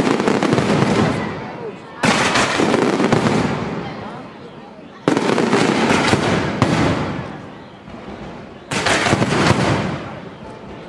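Aerial fireworks display: four loud salvos go off about two to three seconds apart. Each opens with a sharp bang-like onset and trails off in a dense crackle that fades before the next.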